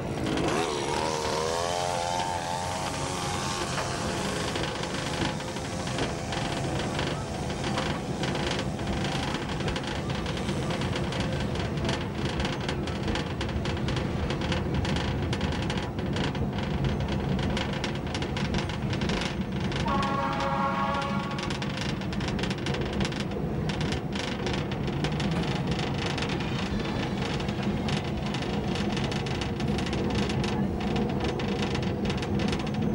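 Diesel train running along the track, heard from the front of the train: a steady engine and running drone with frequent light clicks. A short horn blast comes about twenty seconds in.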